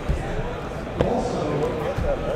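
Sealed cardboard trading-card boxes handled and set down on a padded table mat: a low thump at the start and a sharp knock about a second in, with voices in the background.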